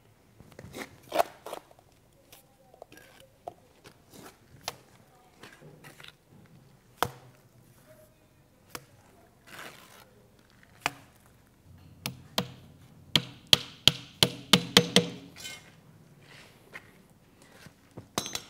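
Plastering trowel knocking and scraping as mortar is picked up and laid on a wall: scattered sharp taps, then a quick run of loud knocks, about three or four a second, about two thirds of the way through.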